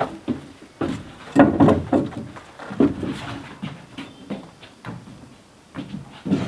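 Irregular wooden knocks and bumps with footsteps on a plank deck as a wooden-framed window is carried into a log cabin.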